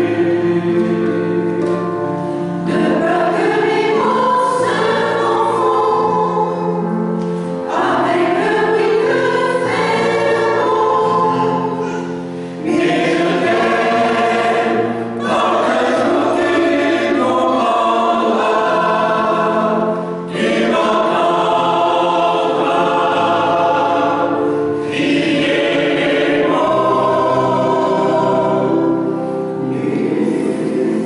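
Mixed choir of men's and women's voices singing in held chords, phrase after phrase with short breaks between them.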